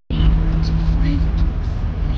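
Engine and road rumble heard from inside a moving vehicle, with a steady low hum for the first second and a half. A split-second gap comes right at the start.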